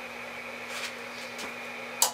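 Steady hiss with a low hum from the running ham radio station equipment, with a couple of faint clicks about midway.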